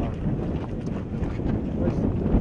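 People talking, with footsteps crunching on dry dirt ground.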